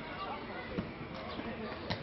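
Two dull thuds of a faustball in play on a grass field, a weaker one a little under a second in and a louder one near the end.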